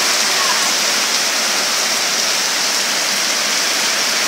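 Heavy typhoon rain pouring down steadily, a dense, even hiss with no let-up.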